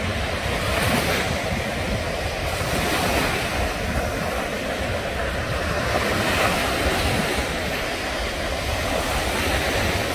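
Small waves breaking and washing up a sandy shore in a steady wash of surf, with wind rumbling on the microphone.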